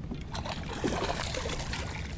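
A hooked fish splashing at the water's surface as it is reeled in to the boat, over a low steady rumble.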